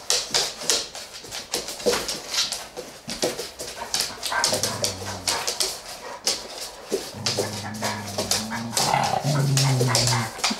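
Dogs playing on a hard floor: quick clicks and scuffles throughout, with a low growl about halfway and a longer low growl over the last three seconds.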